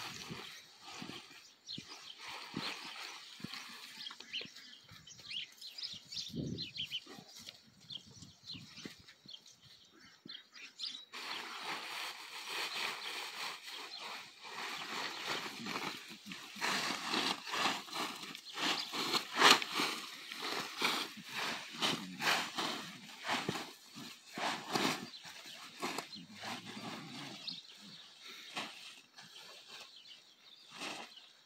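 Blue plastic tarp rustling and crinkling as it is rubbed and draped over a young horse, sparse at first and getting denser and louder about a third of the way in.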